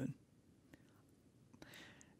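Near silence in a pause in a man's speech, with a faint tick about three quarters of a second in and a soft intake of breath near the end.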